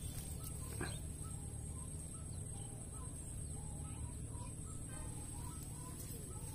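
Faint bird calls, short notes scattered throughout, over a low steady background hum.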